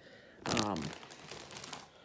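Plastic bags of LEGO pieces crinkling as they are handled. The rustle is loudest about half a second in and dies away over the next second or so.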